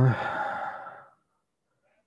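A man's drawn-out 'uh' trailing off into a long breathy sigh that fades away about a second in.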